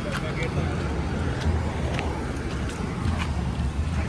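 Street traffic noise: a steady low rumble of passing engines, with voices in the background and a few faint clicks.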